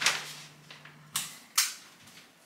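Large sheets of white paper snapping and crackling as they are unrolled and pressed flat on a wooden table: three sharp cracks, one at the start, one about a second in and one just after.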